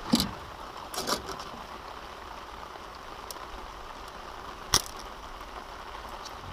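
Steady rain hiss, with a few sharp clicks and knocks right at the start and about a second in, and one sharp click near the end, from handling a caught giant river prawn and metal pliers while unhooking it.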